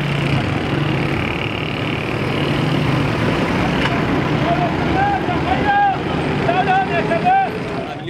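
Motor vehicles driving close past: a motorcycle, then a van, their engines running over a steady road noise. From about halfway, several men's voices call out loudly above it.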